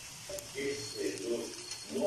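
Faint, indistinct speech in the background, with a small click near the start.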